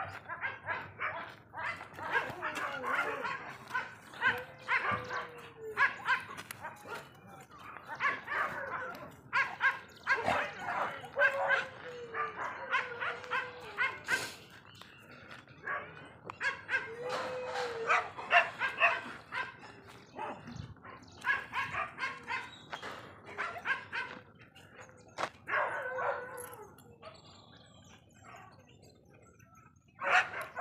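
Dogs barking and yipping in repeated bouts of a few seconds, with quieter gaps between them; the barking dies down near the end.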